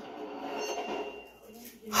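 A cartoon train scene's soundtrack playing through a television's speakers: a soft, steady running noise that fades down after about a second and a half.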